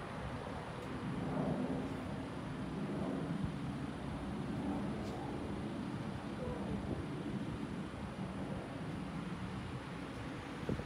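Quiet outdoor background noise: a steady low hum with no distinct events.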